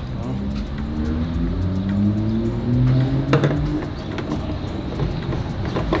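A car engine accelerating, its pitch rising slowly for about three and a half seconds and then holding steady. A sharp click comes about three seconds in.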